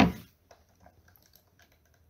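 A short loud noise right at the start, then a string of faint, scattered clicks.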